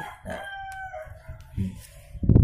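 A rooster crowing faintly in the background: one drawn-out call of about a second that drops in pitch at the end.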